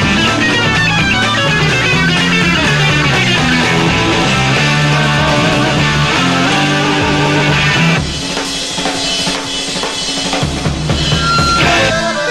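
Live rock band playing an instrumental passage: distorted electric guitar with bass and drum kit, dense and loud. About eight seconds in the full band drops back to a sparser, slightly quieter passage with a steady drum pulse.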